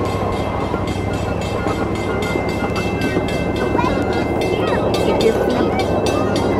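Miniature ride-on park train running, heard from aboard: a steady rumble of the wheels on the narrow-gauge rails with a fast, regular run of clicks. A faint thin high tone sounds through the middle.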